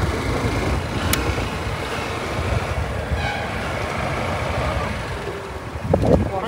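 Steady wind rush over the microphone with engine and road noise from a moving motorcycle, heaviest in the low rumble. A single sharp click about a second in.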